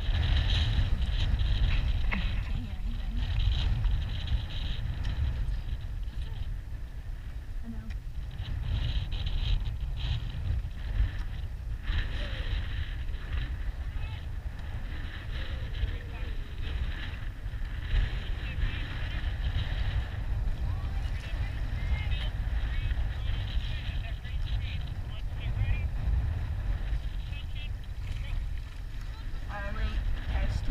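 Wind buffeting the microphone of a camera mounted on a moving rowing shell: a steady low rumble, with a hiss of water and oar noise that swells and fades every few seconds.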